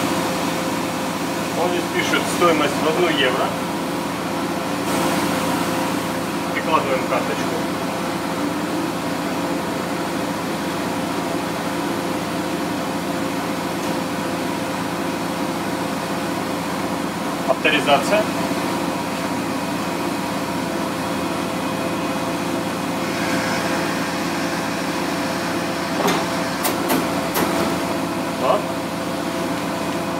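Steady hum of laundromat machines running, with several fixed tones in it. Short snatches of voices come in a few times.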